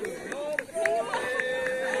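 Several onlookers' voices overlapping, talking and calling out around an open-air football pitch.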